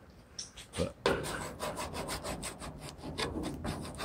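Small metal hand scraper being dragged in quick repeated strokes across a steel truck body panel, scraping off factory paint that liquid paint stripper has only partly softened. A couple of single scrapes come first, then a fast steady run of strokes from about a second in.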